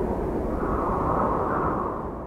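Logo-intro whoosh sound effect: a rushing swell of noise over a deep rumble, loudest about a second in and starting to fade near the end.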